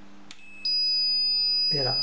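Digital multimeter's continuity buzzer sounding a steady high-pitched beep, starting about half a second in, a moment after a click: the alarm panel's onboard relay has closed its normally open contacts on the alarm.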